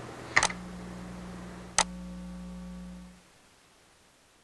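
Two sharp clicks, with a steady electrical hum setting in after the first. About three seconds in, all sound cuts off to dead silence, an audio dropout.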